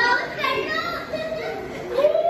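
Children's voices calling out and talking.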